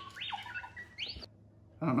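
R2-D2 novelty pizza cutter playing its electronic droid chirps as it rolls through pie-crust dough: a quick string of rising and falling whistling beeps lasting about a second.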